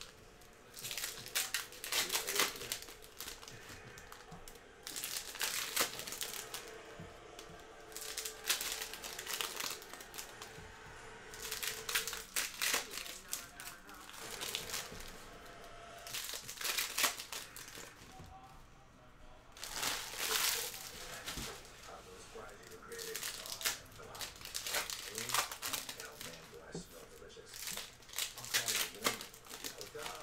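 Trading-card pack wrappers being crinkled and torn open by hand, in repeated rustling bursts every couple of seconds, with the cards handled in between.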